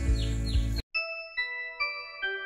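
Outdoor ambience with wind rumbling on the microphone and a few short falling bird chirps, which cuts off abruptly under a second in. Then instrumental background music of clear, separate notes, each struck and held.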